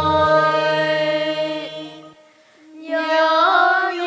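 Children singing a Vietnamese song in long held notes, with a low accompaniment note that stops just after the start. The voices break off briefly about two seconds in, then take up the next held note, which rises slightly.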